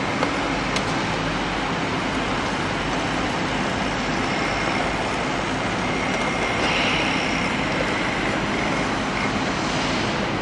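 Steady din of heavy construction machinery running on a large building site, with a brief high-pitched whine about seven seconds in.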